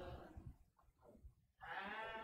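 Unaccompanied singing voices: a sung phrase trails off, there is about a second of near silence, and the singing comes back in near the end.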